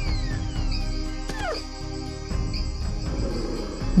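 Cartoon wolf yelping as it is flung away: a cry that jumps up sharply and then falls in a long slide, followed about a second and a half in by a second, shorter falling yelp. Background music with held tones plays underneath.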